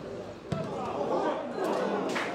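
A football struck once with a sharp thud about half a second in, then players' shouts and voices.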